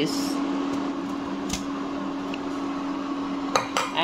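Jaggery syrup boiling and bubbling in a nonstick pan as washed poha is tipped in from a steel spoon, with a steady low hum underneath. The spoon clinks against the pan once about a second and a half in and a few times near the end.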